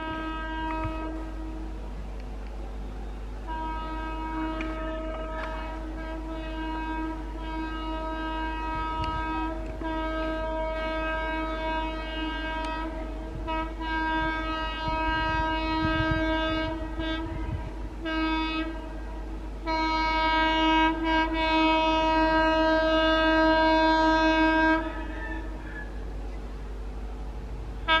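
Horn of an approaching Indian Railways twin WAG-9 electric locomotive, sounded in long, repeated blasts of one steady chord with short breaks, growing louder toward the end and stopping a few seconds before the end.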